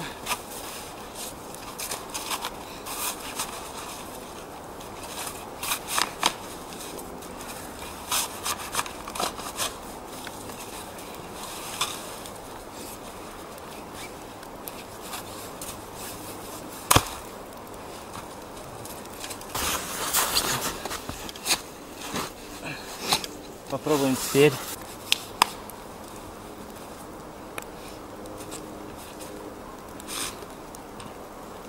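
A small shovel digging and scraping packed snow to free a bicycle's front wheel stuck in deep snow: irregular scrapes, crunches and knocks, with one sharp knock past the middle. A brief grunt-like voice sound comes about two-thirds of the way through.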